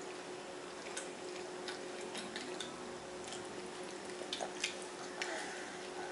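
Faint, scattered wet clicks and smacks of mouths chewing pizza, over a steady faint hum.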